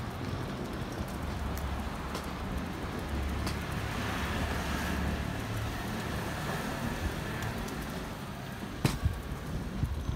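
Steady city street background: a low traffic rumble under a hiss, with a single sharp click near the end.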